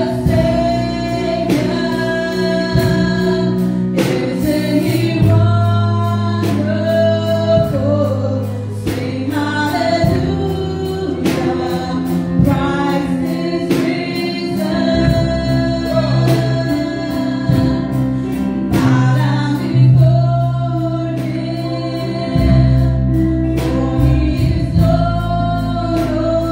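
Gospel song: a woman sings lead into a microphone over electronic keyboard accompaniment, with long sustained bass notes that change every few seconds.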